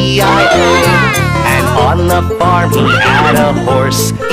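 Children's nursery-rhyme song with a bouncy backing track, and a cartoon horse's whinny sound effect over the music, a wavering call that falls in pitch.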